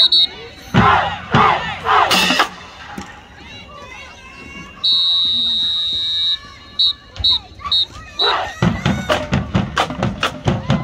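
Band members shouting in unison a few times, then a drum major's whistle: one long blast and a quick run of five short toots counting the band off. About a second before the end the drumline comes in with a steady beat, about three strokes a second.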